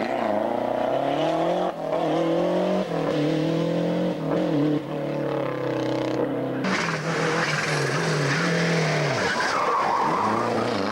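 Rally car engine at full throttle on a night stage, pitch climbing and dropping back at several gear changes. About two-thirds of the way through the sound turns louder and harsher.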